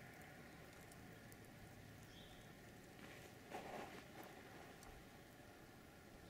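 Near silence: faint outdoor wind ambience, with a brief soft gust about three and a half seconds in and a faint short high chirp about two seconds in.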